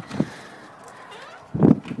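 A wooden front door being pushed open: a small knock just after the start, then a louder dull thump near the end.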